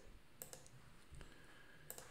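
Two faint computer mouse clicks, about a second and a half apart, over near-silent room tone.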